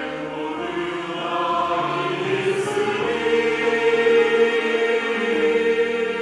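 Mixed church choir singing a Korean sacred anthem in held chords, swelling louder about halfway through.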